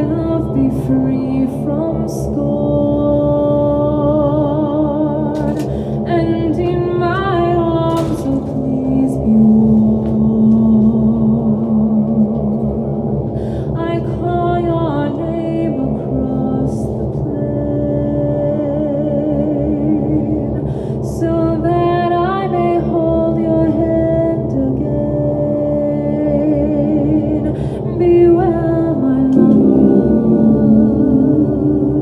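A woman singing long held notes with vibrato into a microphone, gliding between pitches, over a steady low droning accompaniment.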